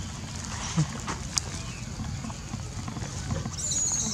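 Young long-tailed macaque giving a brief high-pitched squeal near the end, over steady outdoor background noise with a few faint clicks.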